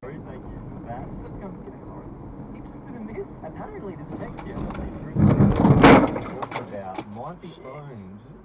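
Road and engine noise from a car, broken about five seconds in by a loud crash lasting under a second, followed by a scatter of sharp clicks: a car collision.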